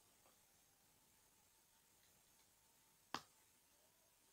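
Near silence with a single sharp plastic click a little over three seconds in: a Lego brick being pressed onto a build.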